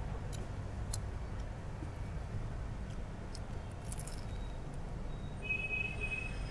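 Steady low background rumble of a small shop, with a few faint, sharp clicks scattered through it and a short, high beep-like tone near the end.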